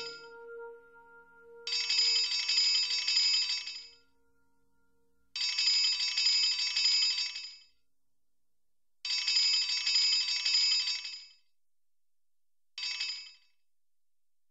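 A telephone ringing: three rings of about two seconds each at even intervals, then a fourth cut short after about half a second. The last notes of the song fade out under the first ring.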